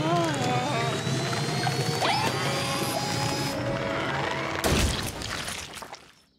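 Cartoon soundtrack of music and sound effects: a slowly rising tone, wordless character voices in the first second or so, and a loud crash about 4.7 seconds in, after which the sound fades out.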